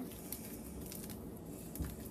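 Faint squishing and tearing of slime being worked by hand with pieces of toilet paper, with a soft low bump near the end.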